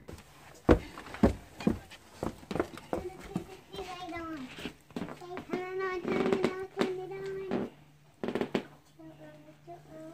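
Footsteps on a bare wooden floor, roughly two a second, then a high child's voice with long, held notes for several seconds, and a couple of knocks near the end.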